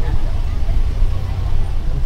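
Open-sided tour bus running at a steady speed, heard from a seat in its passenger carriage: a steady low engine and road rumble.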